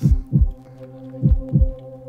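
A heartbeat sound effect: two double thumps, deep and dropping in pitch, about 1.25 seconds apart, over a steady low drone.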